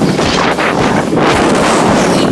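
Loud, rough rushing noise of wind buffeting the phone's microphone as it moves close over the snow.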